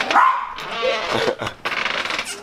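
Small dog barking, a few short barks.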